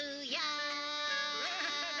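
A children's song ending, with cartoon character voices holding a long sung note over music. The pitch wavers near the end.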